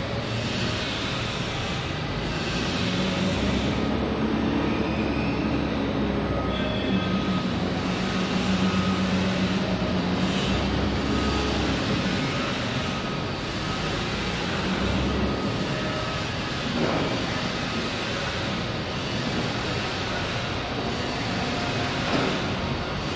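Wulftec WSML-150-B semi-automatic stretch wrapper running: its turntable rotates a pallet while the powered pre-stretch rollers feed film, a steady mechanical rumble. A low hum swells for several seconds in the middle.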